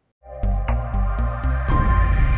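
Intro music for a logo animation, starting after a brief silence, with a deep bass line in short repeated notes and sharp ticks on top; it moves into a fuller section about a second and a half in.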